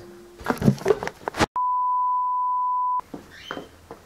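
A single steady, pure beep tone about a second and a half long, cutting in and out abruptly around the middle, with all other sound silenced under it, as in an edited-in bleep. Short rustles and knocks of handling come before it.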